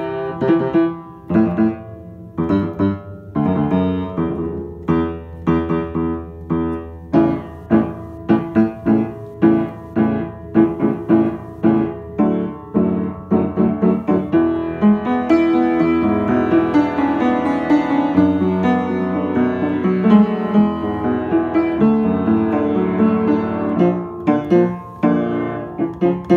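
Upright piano played by hand: a run of struck notes and chords, separate notes at first, turning denser and more sustained about halfway through.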